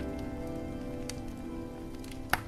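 Wood fire crackling in a fireplace, with scattered sharp pops and one louder pop about a second in. The last held notes of a jazz tune fade out underneath.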